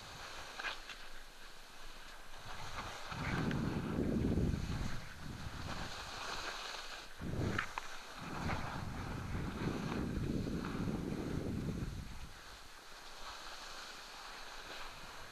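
Wind rushing over the microphone of a head-mounted camera during a fast ski descent. It comes in heavy swells: one a few seconds in, a short one past the middle, and a long one near the end. Under it runs the thin hiss of skis sliding over spring snow.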